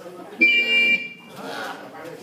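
A loud, high, steady electronic-sounding tone starts suddenly about half a second in and cuts off after just under a second, with quieter voices around it.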